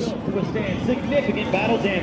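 Background voices: several people talking at once in an outdoor crowd, none of them close.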